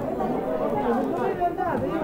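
Murmur of many people talking over one another in a hall, with no single clear voice.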